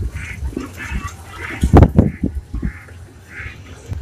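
Short bird calls repeating about every half second, with one louder knock a little before the middle.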